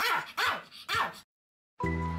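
Pomeranian barking three times in quick succession, then a brief silence before music starts near the end.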